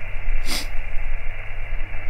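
Static hiss from an HF amateur radio transceiver's speaker on single sideband, a narrow band of band noise with no station answering the CQ call, over a steady low hum. A brief sharp noise about half a second in.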